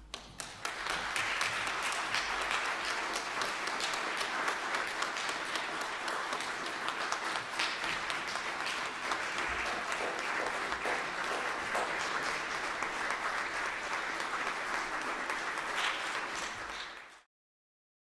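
Church congregation applauding steadily, the applause cutting off abruptly near the end.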